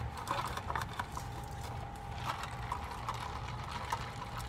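Scattered small clicks and rustles as a paper straw wrapper is torn off and a plastic straw is pushed into the plastic lid of a fast-food drink cup.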